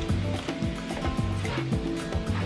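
Ground beef sizzling in a frying pan as taco seasoning is poured in, with music playing in the background.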